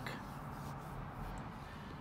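Low, steady room noise with no distinct sound: a pause between words.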